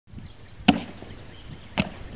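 A single sharp, hard knock about two-thirds of a second in, as an overhead swing strikes a Coca-Cola bottle below the top and sends it flying. A second, weaker knock follows near the end.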